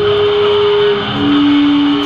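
Heavily distorted electric guitar from a live hardcore/metalcore band, holding one loud sustained note that drops to a lower note about a second in.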